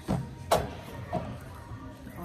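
Small canvas art boards knocking and sliding against one another as they are handled and pulled apart. There are a few light knocks, the sharpest about half a second in.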